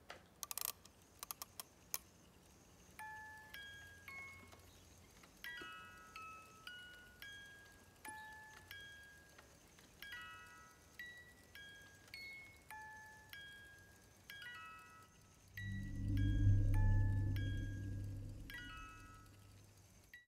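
Wind-up music box playing a slow tinkling tune of plucked metal-comb notes, after a few sharp clicks at the start. About three-quarters through, a loud deep drone swells up under the tune and slowly fades.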